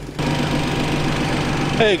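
Steady low mechanical hum of an engine or machine running, starting a moment in. A man's voice says "Hey" at the very end.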